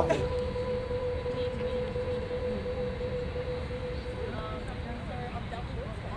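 Low outdoor rumble under a steady held tone that slowly fades out.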